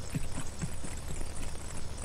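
Light footsteps on stairs: a quick run of soft steps, about four a second.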